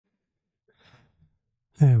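Near silence with a faint intake of breath about a second in, then a voice begins speaking near the end.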